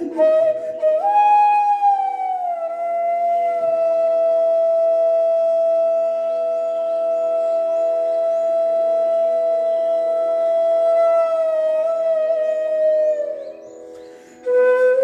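E-base bamboo bansuri playing a slow Hindustani classical raga phrase: a note rising about a second in, gliding down and held for about eight seconds, then sliding down and fading near the end. A steady drone sounds underneath.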